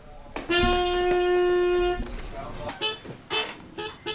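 Trumpet holding one long steady note for about a second and a half, then a few short blasts.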